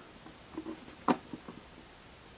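Faint handling of a plastic action figure being stood up on a display turntable: a few light taps and clicks, with one short spoken word about a second in.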